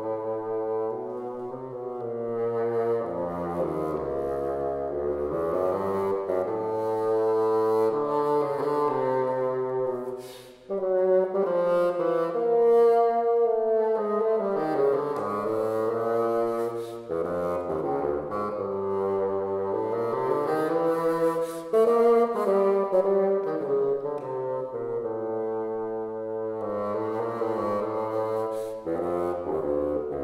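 Solo bassoon playing a slow contemporary passage: long held notes, some sliding up and down in pitch, reaching down into the instrument's low register. A brief break for breath comes about ten seconds in.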